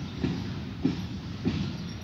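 Freight train wagons rolling past a level crossing, their wheels clacking over rail joints about every half second with a steady low rumble underneath, as the tail of the train moves away.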